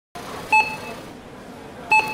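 Supermarket checkout barcode scanner beeping twice as items are passed over it: two short electronic beeps about a second and a half apart.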